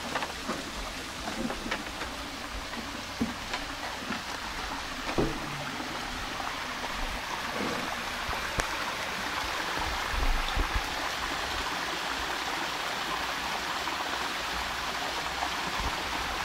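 Water spilling over a small stepped concrete dam into a creek pool: a steady rushing and splashing that grows a little louder over the second half.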